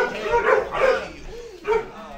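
A string of short, loud, bark-like vocal bursts, roughly two a second, mixed with some talk.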